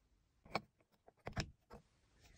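A few faint plastic clicks and taps as a vintage GE Mickey Mouse plug-in night light is pushed into a wall outlet: one about half a second in, a pair near the middle, and a small one near the end.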